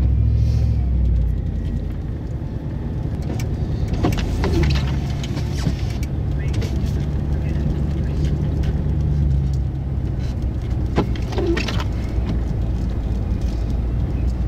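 Car engine and tyre noise heard from inside the cabin while driving slowly on snow-covered streets: a steady low hum, with a few brief sharper sounds around four seconds in and again near eleven seconds.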